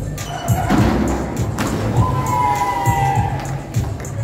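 A springboard diver's entry splash into the pool about a second in, heard over background music with a steady thumping beat in a large, echoing pool hall. A single held high note follows about two seconds in.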